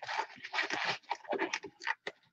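Rustling and scraping of a disposable glove being fetched and handled, in several short irregular bursts.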